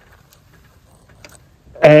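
A few faint, light clicks from hands working in an engine bay, over a quiet background; a man starts speaking near the end.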